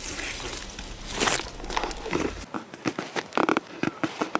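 Rustling and crackling of leaves and twigs in undergrowth, with scattered small clicks and a louder burst of rustle near the end.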